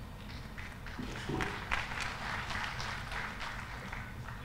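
Scattered audience clapping in a hall, starting about a second in and fading away near the end.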